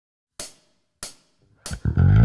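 Three hi-hat count-in beats from a drum backing track, evenly spaced about two-thirds of a second apart. Near the end the drums and an electric bass guitar, a Yamaha TRBX174, come in.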